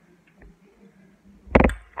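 A faint steady room hum, then a short loud clatter of several quick knocks about one and a half seconds in, as things are handled.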